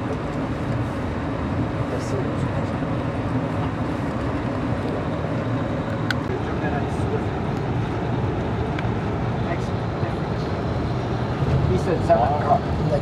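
Steady rumble and rolling noise of a passenger train running on the rails, heard from inside a dome car, with a few faint clicks scattered through it.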